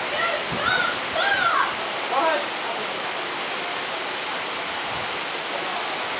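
Small waterfall pouring into a rock pool: a steady, even rush of water, with a few distant shouts over it in the first two seconds.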